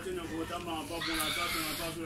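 Singing voices carrying a wavering, stepwise melody; a hiss joins about halfway through.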